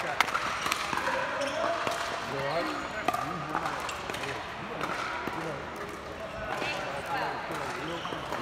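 Irregular sharp pops of hard plastic pickleballs striking paddles and the court, over a murmur of background voices.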